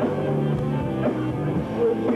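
A live rock band playing, with electric guitar, bass guitar and drum kit, and a woman singing into the microphone.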